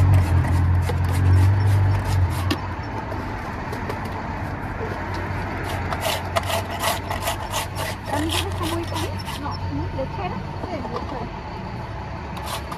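Ice being shaved by hand with a scraper for a minuta: two runs of quick rasping strokes, one at the start and one from about the middle.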